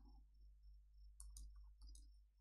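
Faint computer-keyboard keystrokes as a date is typed, a few clicks about a second in and again near the end. Under them runs a faint, evenly repeating high chirp.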